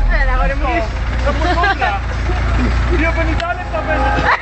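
Deep bass from a car audio system's subwoofers playing loud, with people shouting over it; the bass cuts off about three and a half seconds in.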